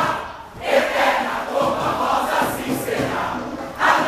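Large samba-school chorus, many voices singing loudly together, with a short break about half a second in and a surge of voices just before the end.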